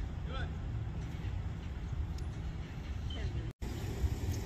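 Steady low rumble of road vehicles with faint distant voices over it. The sound cuts out for an instant about three and a half seconds in.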